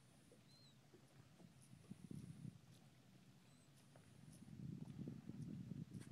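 Near silence on open water: a faint low rumble that swells briefly about two seconds in and again toward the end, with one or two faint short high chirps.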